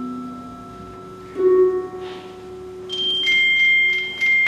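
Slow chamber music for clarinet, harp and percussion: earlier notes fade, then a soft held clarinet-like note enters about a second and a half in. Near the end, high bell-like mallet percussion strikes ring out over it.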